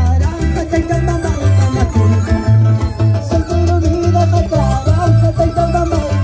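Live band music played loud through a stage sound system, with a steady pulsing bass beat under a wavering melody line.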